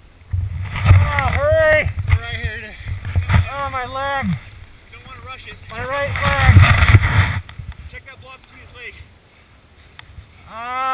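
Drawn-out, muffled vocal cries from a man buried under avalanche snow, with dull thuds and scraping of snow being dug away close to the microphone. The noise comes in two busy stretches and dies down near the end.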